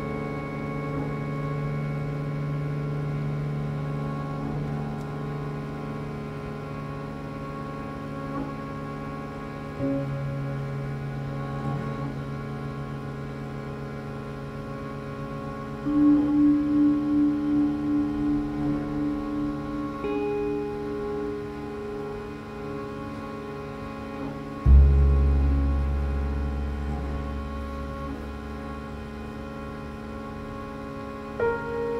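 Slow ensemble drone music: many sustained tones layered on one another, shifting in small steps. Just past halfway a pulsing mid-range tone comes in for a few seconds, and near the end a deep low tone enters and slowly fades.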